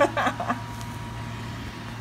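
A woman's short laugh, opening with a sharp click, then a steady low hum for the rest.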